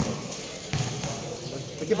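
A basketball bouncing once on the concrete court about three-quarters of a second in, a single short thud.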